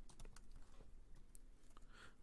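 Faint typing on a computer keyboard: a run of quick, light key clicks.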